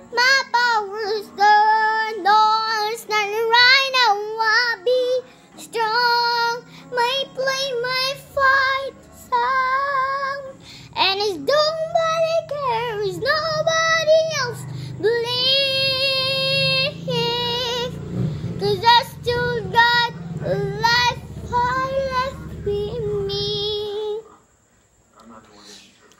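A young girl singing solo, in sung phrases with long held notes broken by short pauses for breath.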